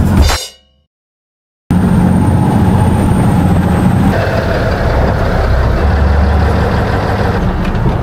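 Canal express boat's engine running loudly and steadily, with the rush of water spray along the hull. It starts abruptly about two seconds in, after a moment of silence.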